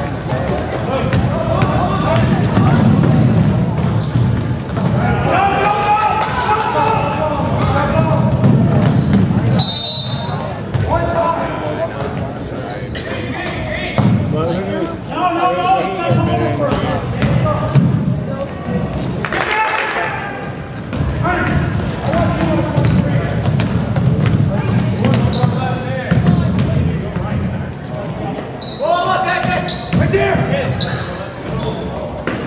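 A basketball bouncing and dribbling on a hardwood gym floor during play, with sharp knocks throughout. Players' and coaches' voices call out across the court, echoing in a large gym.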